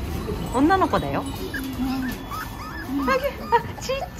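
Miniature Pinscher whimpering and whining in high-pitched cries that rise and fall: one longer cry near the start, then several short chirping whines later on.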